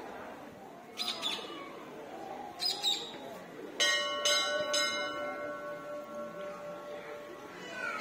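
A temple bell struck several times, about two strokes a second, starting about four seconds in, its ringing fading slowly after the strokes stop. Two short, high gliding calls come before it.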